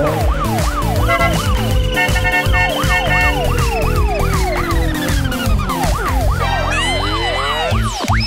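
A police siren sound effect yelping quickly up and down, about three cycles a second, over background music with a steady beat. A long slowly falling tone runs through the middle, and rising sweeps come near the end.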